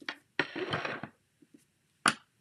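Craft tools being handled on a work mat: a light click, then a short scraping rustle lasting about half a second, as a clear acrylic stamping tool is moved.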